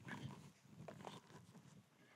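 Near silence: faint open-air background with a few brief, indistinct low sounds.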